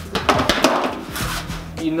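A quick run of punches landing on a homemade double-end bag, a cheap ball in a fabric cover strung on elastic cords, in the first second and a half, over background music.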